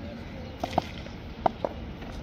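Four short, sharp knocks over open-air background noise, the loudest a little under a second in and about halfway through.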